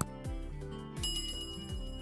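Light background music with a high bell ding about a second in that rings on for about a second: the notification-bell sound effect of a subscribe-button animation.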